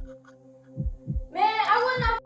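Heartbeat sound effect: pairs of low thumps repeating a little over once a second over a steady hum, with a voice coming in past the middle.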